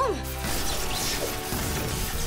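Cartoon sound effects of a robot short-circuiting: a dense crashing, crackling clatter that starts about half a second in, over background music.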